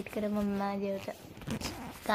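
A voice holding one flat, steady note on 'get' for most of a second, followed by a short rustling, scraping noise.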